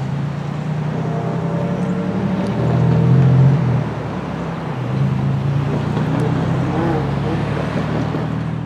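Low, steady engine drone with a strong hum, swelling to its loudest about three seconds in and then easing off.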